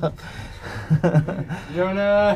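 People's voices: brief speech around a second in and a drawn-out voiced sound near the end, over a low hiss.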